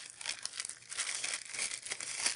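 Glad Press'n Seal plastic wrap crinkling as hands fold it around a small paper piece and press it down, in an irregular run of rustles.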